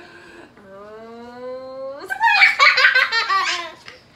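A long, drawn-out vocal sound slowly rising in pitch builds anticipation, then breaks about two seconds in into a loud burst of young children's laughter during a tickle game.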